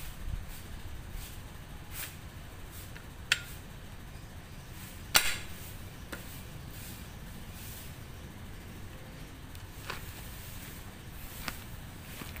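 Light metal clinks and taps from a ship main-engine bearing shell being handled and wiped in its housing, with two sharper clinks about three and five seconds in, over a low steady background rumble.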